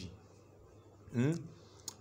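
A man's voice pausing in his talk: near quiet for about a second, then a short voiced hesitation sound, and a brief click just before he speaks again.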